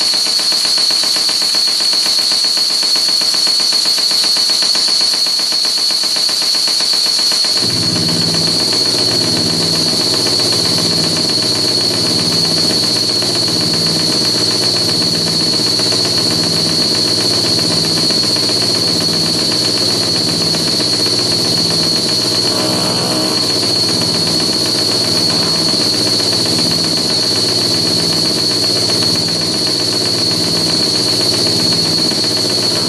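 Live circuit-bent electronic noise: a loud, steady high-pitched whine over hiss. A low, rhythmically pulsing drone cuts in about eight seconds in and keeps going underneath, with a brief warble a little past the middle.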